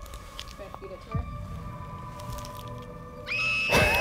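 Faint rustling and clicks of a small sour-candy wrapper being opened by hand, under quiet background music. Near the end a high steady tone comes in, then a woman's reaction voice as she tastes the sour candy.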